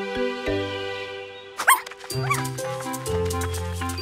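Cartoon background music with a steady bass line. Near the middle, a cartoon puppy gives two short yips about half a second apart.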